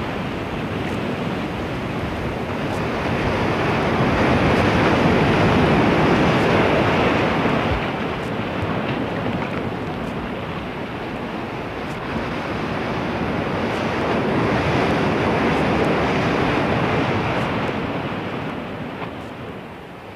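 Ocean surf breaking and washing up a beach, a steady rush that swells twice, loudest about five seconds in and again around fifteen seconds in.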